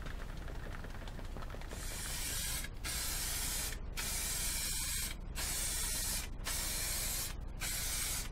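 Aerosol can of clear lacquer spraying a coat onto a wooden platter in a series of about six short bursts, starting about two seconds in. Each burst lasts roughly a second, with brief breaks between them.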